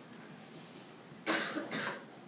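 A person coughing twice in quick succession, about a second and a quarter in, in a quiet room.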